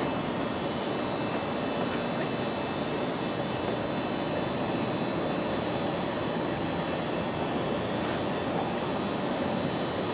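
Steady mechanical drone with a thin high whine held throughout, unchanging in level, with a few faint small ticks over it.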